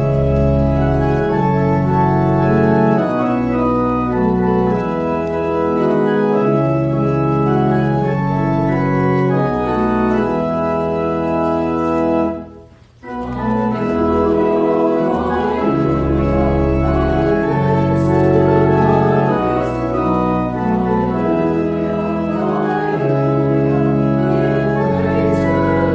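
Organ playing a hymn: sustained chords over a moving bass line. It breaks off for about half a second near the middle, then carries on.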